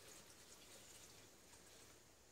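Near silence, with faint pouring as stock is tipped from a plastic bowl into the stainless steel jug of a Philips soup maker.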